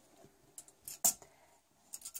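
Light handling noise of a tape measure and craft wire on a tabletop: a few faint ticks and a soft brush, with one sharper brief click about a second in and another small click near the end.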